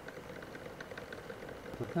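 An old desktop computer's cooling fan running with a faint steady hum and light clacking; the ageing fan is starting to rattle.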